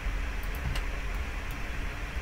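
A few faint single clicks of a computer mouse, spread unevenly over the two seconds, over a steady low hum of room and microphone noise.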